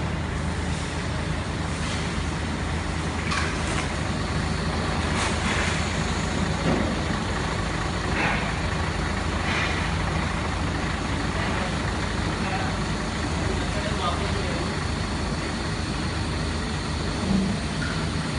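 Steady low drone of a heavy truck's diesel engine idling, with faint voices over it.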